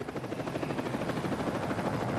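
Helicopter hovering low over the ground, its rotor beating in a steady rapid pulse that grows slightly louder.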